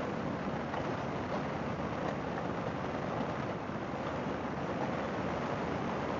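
Harley-Davidson Fat Boy V-twin running steadily at cruising speed, mixed with wind and road noise, with no change in speed.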